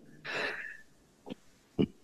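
A man's short, breathy exhale of laughter, followed by a faint tick and a quiet spoken word near the end.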